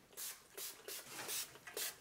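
Hand pump spray bottle misting a dog's coat: about six quick squirts in a row.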